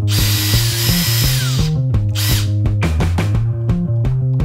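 Makita cordless drill boring out a handle fixing hole in a cupboard door: one run of about a second and a half whose whine falls in pitch as it stops, then a short second burst about two seconds in. Background music with a steady beat plays throughout.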